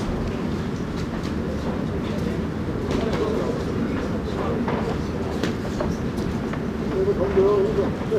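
Ringside ambience at a live pro boxing bout: a steady murmur and rumble of the hall, with scattered sharp knocks from the ring. A raised voice calls out about seven seconds in.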